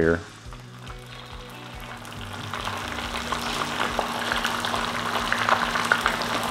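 Beaten eggs sizzling as they are poured onto a hot buttered electric griddle. The sizzle builds steadily louder as more egg spreads across the hot surface.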